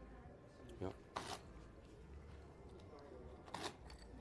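Playing cards sliding across a blackjack table's felt as they are dealt: two brief, faint swishes, about a second in and again near the end, over low room noise.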